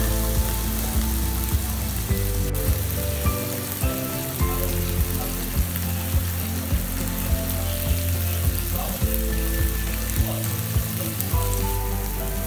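Chopped tomatoes and onions sizzling steadily as they sauté in oil in a nonstick pan, under background music of slow, held notes.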